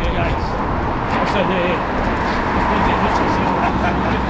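Steady city-street traffic noise with several men's voices talking over one another in the background, and a laugh near the end.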